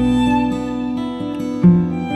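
Acoustic guitar and violin playing an instrumental introduction: plucked guitar notes under a sustained violin line, with a louder low guitar note near the end.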